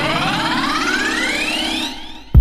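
A rising synthesizer sweep in a dance-track breakdown: a stack of siren-like tones glides steadily upward with the drums and bass dropped out. It fades away near the end, building toward the drop.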